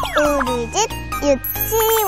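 Children's TV title jingle: bright music with children's voices gliding up and down in pitch. A high twinkling chime comes in near the end.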